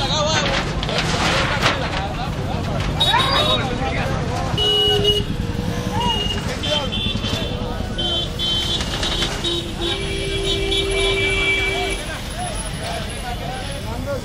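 Street traffic with vehicle horns honking: short honks about five seconds in and again from about six to nine seconds, then one long horn blast of about two seconds, over steady engine rumble and people's voices.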